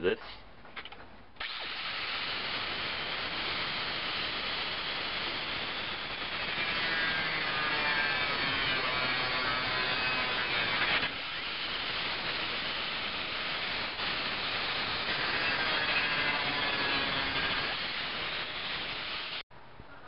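7-amp DeWalt angle grinder cutting through a sheet-steel cross brace of a filing cabinet. It starts about a second in and runs steadily under load, its pitch wavering a little as the disc bites, then cuts off abruptly just before the end.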